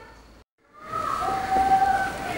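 Faint room tone that drops out to silence about half a second in, then background music fading in with slow, held notes.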